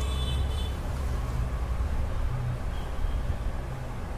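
A steady low rumble, with no sharp sounds in it.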